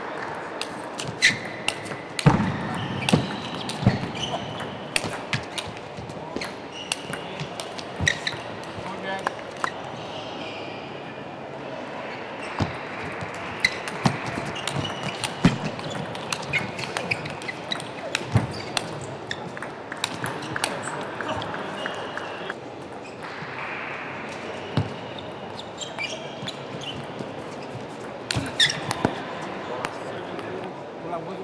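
Table tennis rallies: the celluloid ball clicking sharply off the rubber-faced bats and bouncing on the table, in quick irregular exchanges, over a steady murmur of hall noise.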